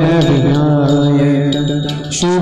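Marathi devotional abhang singing: a voice holding a long chanted note over a steady harmonium, with small hand cymbals (tal) struck now and then. The sound drops off briefly at the end as the phrase closes.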